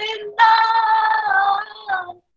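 A woman singing a devotional bhajan unaccompanied: a short phrase, then one long held note that dips slightly in pitch near its end.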